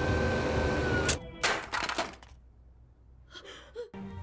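Film sound effects: a steady high whine that sags slightly in pitch and breaks off about a second in, followed by a few sharp cracking impacts, then a near-silent stretch.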